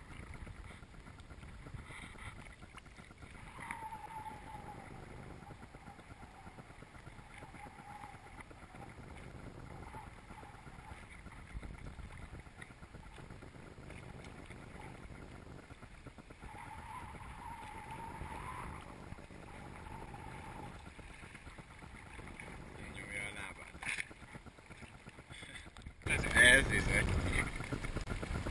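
Small sea waves lapping and sloshing around an action camera held at the water's surface, faint and muffled. About two seconds before the end it turns suddenly much louder, with wind on the microphone.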